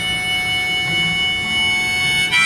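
Harmonica holding one long, steady high note over strummed acoustic guitar chords.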